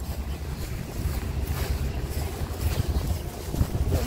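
Wind buffeting a phone's microphone: a low rumble that rises and falls with the gusts.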